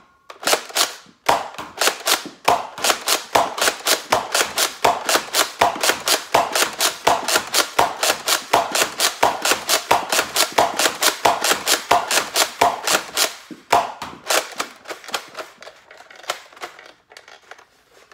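Nerf Rival Hades pump-action spring blaster being pumped and fired in rapid succession, a fast string of sharp plastic clacks about three to four a second. The shots thin out and stop near the end, where the blaster jams.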